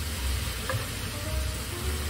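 A frying pan of onion, pork and vegetables sizzling steadily on a gas burner as boiled pasta is tipped into it from a pot, with one faint tick a little under a second in.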